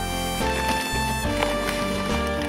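Instrumental background music with held melody notes changing every half second or so.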